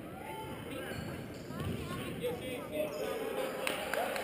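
A basketball bouncing on a hardwood gym floor during play, with spectators talking.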